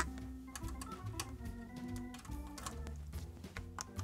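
Faint background music: a slow run of held notes, with a few light clicks.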